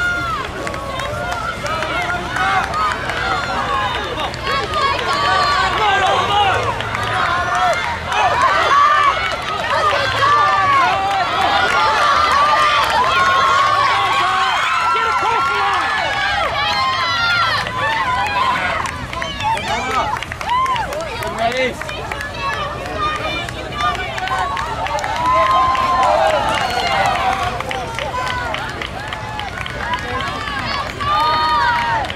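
Spectators shouting and cheering on cross-country runners, many voices overlapping with no break.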